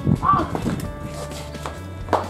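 A short high-pitched vocal sound about a quarter second in, then only a low steady hum.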